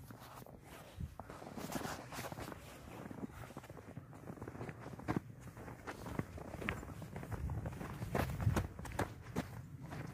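Footsteps walking through deep, wet snow, an uneven series of soft steps.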